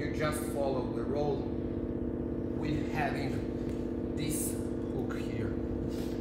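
Short snatches of a man's voice over a steady hum of several low tones.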